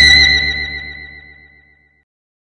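A music sting: one loud distorted chord struck once and fading away, with a high tone held until it cuts off suddenly near the end.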